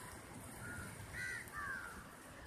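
Crows cawing: a few short calls about a second in, over a steady background rush.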